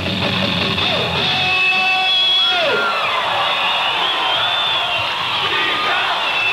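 Rock band playing live, recorded from the audience: guitars and voices with the low end dropping away about a second and a half in. A long held note then slides down in pitch, followed by yells over the ringing instruments.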